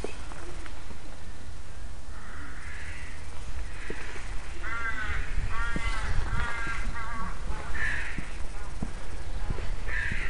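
A crow cawing: a run of about four harsh calls in quick succession around the middle, with a fainter call or two before and after, over a steady low rumble.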